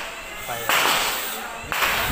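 Gunshots at a shooting range: two sharp reports about a second apart, each trailing off in echo.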